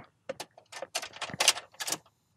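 Car key being pushed into a Ford's ignition lock cylinder and turned: a quick run of small, sharp metallic clicks with the key ring rattling.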